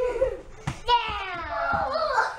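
Young children shrieking and yelling in play, with a long high-pitched squeal about a second in, and a few dull thumps among the shouts.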